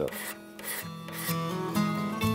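A hand scraper blade drawn along the ebony edge of a guitar in a few short scraping strokes. Soft background music comes up over it from about a second in.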